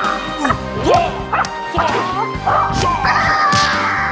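Film score music with a man's high-pitched, animal-like martial-arts cries over it: several short yelps that swoop up and down in pitch, and a longer wavering cry about three seconds in.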